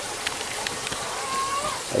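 Steady background hiss with a few faint clicks, and one brief soft call from chickens in a wire cage about a second and a half in.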